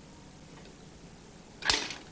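Near the end, one sharp click with a short tail after it: a microsatellite solar panel's hinge latch snapping into place as the panel swings open to its deployed position.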